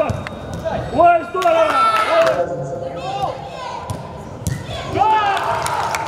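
Players shouting to each other during an indoor five-a-side football game, with a few sharp thuds of the ball being kicked, heard in a large echoing sports hall.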